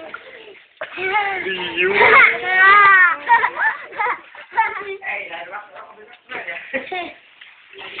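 Young children shouting and squealing with high, wavering voices, loudest about two to three seconds in, then quieter chatter and shouts.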